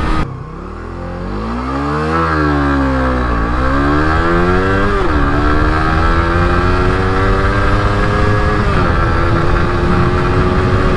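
Suzuki GSX-R150 single-cylinder engine accelerating hard from a standing start. The revs rise, sag about two seconds in as the clutch takes up, then climb in first gear. They drop at a gear change about five seconds in, climb again more slowly, and drop at another gear change near the end.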